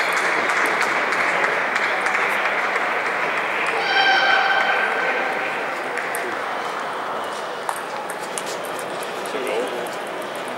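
Hall full of crowd chatter from many voices, with sharp clicks of table tennis balls from the surrounding tables scattered through it and more of them near the end. About four seconds in, a steady pitched tone sounds for about a second.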